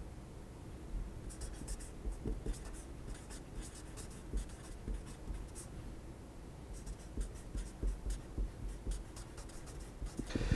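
Felt-tip marker writing on paper: faint, short scratchy strokes in runs, with pauses between the words.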